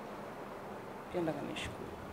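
A steady background hum with no other sound except a short spoken syllable or two, about a second in.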